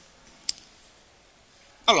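A single short, sharp click about half a second in, over faint hiss.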